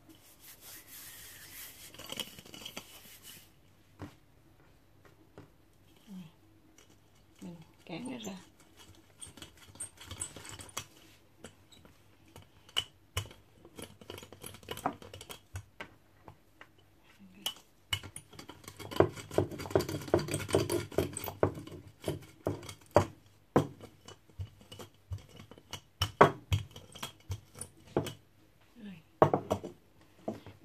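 Wooden rolling pin rolling out a ball of steamed-bun dough on a countertop: irregular clicks and knocks of the pin on the counter, busiest a little past the middle.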